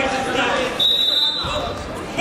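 Voices shouting during a wrestling bout, with thumps of wrestlers' bodies on the mat as one drives in on the other's legs. A short, high, steady whistle-like tone sounds about a second in.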